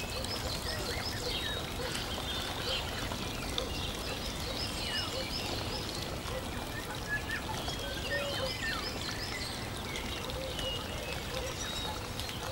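Birdsong: many short, high chirps and twitters over a steady background hiss.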